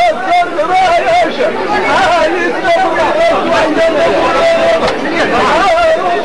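Voices chanting Amazigh inchaden sung poetry, a wavering vocal line around one pitch with a held note about halfway in, over a murmur of other voices.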